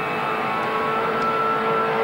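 Holden Commodore Group A V8 race engine heard from inside the cabin, running at high, steady revs with a slight rise in pitch.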